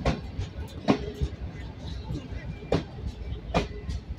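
Passenger coaches of a train rolling past close by, with a low rumble and four sharp wheel clacks over rail joints, heard in two pairs as each bogie's axles cross. A brief ringing squeal follows some of the clacks.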